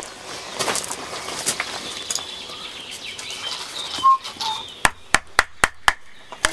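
Wooden baton knocking on a knife driven into wood, about five sharp knocks in quick succession near the end, with birds chirping throughout.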